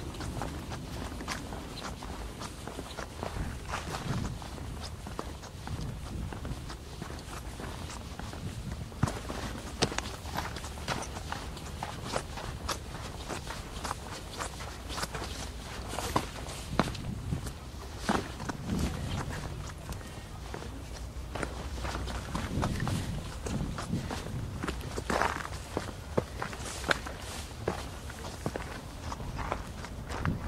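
Footsteps of a person walking over sand, grit and stone slabs, an irregular series of short steps.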